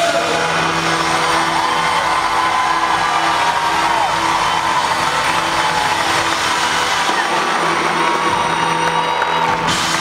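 Live rock band holding a sustained chord while the audience cheers and whoops.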